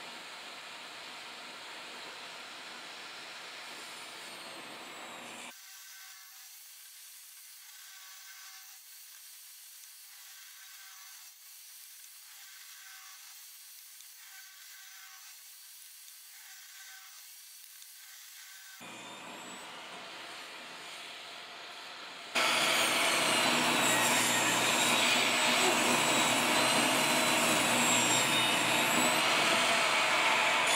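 Portable table saw fitted with a freshly replaced blade, its motor running loud with a steady whine from about two-thirds of the way in as it rips a rough-sawn board into narrow strips. Before that, a much fainter steady noise, thinner still through the middle.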